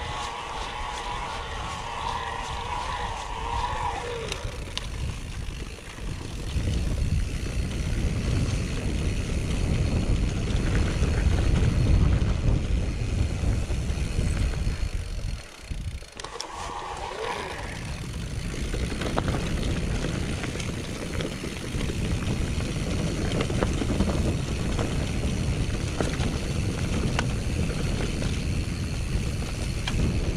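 Mountain bike rolling down a grassy, bumpy trail: a steady rumble of tyres and wind on the microphone, with the bike rattling and clicking over the ground. A short wavering whirr sounds in the first few seconds and again briefly after the midpoint.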